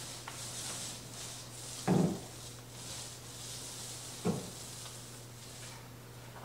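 Paint roller on an extension pole rolling wet paint over a wall: a faint sticky, sizzling swish that comes and goes with each stroke. Two short thuds land about two seconds in and about four seconds in, over a steady low hum.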